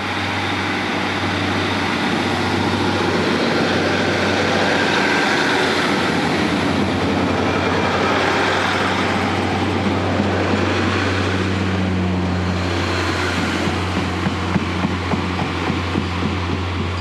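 Diesel multiple unit train pulling out of the platform, its engines running with a steady low hum as the carriages roll past. Near the end a run of clicks comes from the wheels passing over rail joints as it moves away.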